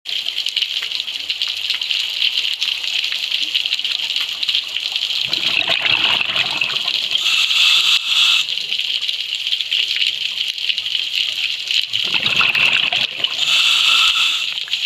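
A scuba diver's regulator heard underwater. Exhaled bubbles rush out twice, about five seconds in and again near the end, and each is followed by a brighter hiss of inhalation, over a steady high hiss.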